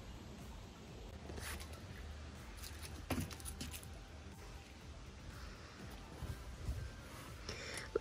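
Faint handling noises as a baby doll is set into a fabric stroller: soft rustling of a fleece blanket and a light knock about three seconds in, over a low steady rumble.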